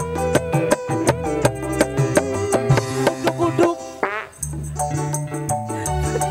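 Live dangdut koplo band playing, with fast, evenly spaced hand-drum beats over keyboard and bass. About four seconds in, a short rising run leads into a brief drop-out, then the full band comes back in.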